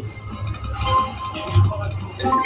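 Video slot machine playing its electronic spin music and short chime tones while the reels spin and stop, with a low thump about one and a half seconds in.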